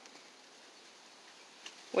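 Near silence: faint outdoor background, broken by speech at the very end.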